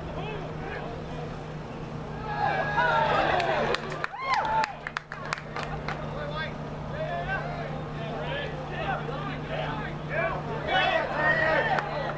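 Many overlapping voices shouting and calling during rugby play, loudest from about two seconds in and again near the end, over a steady low hum. A few sharp knocks come about four seconds in.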